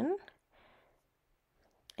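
The end of a spoken word, then near silence broken by a faint, brief rustle and a single sharp click just before speech resumes.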